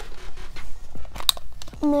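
Small hinged metal tin being handled and opened: a run of light clicks and scrapes, with one sharper click a little past halfway.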